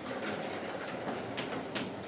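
A few light footsteps on a hard floor, sharp clicks in the second half, over a steady hiss of room noise.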